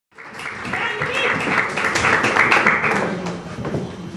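Audience applauding, with voices calling out in the crowd; the sound begins suddenly.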